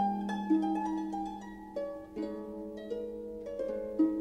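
Pedal harp playing a slow adagio: single plucked notes ringing on over a held low bass note, growing softer about two seconds in before fresh notes are struck.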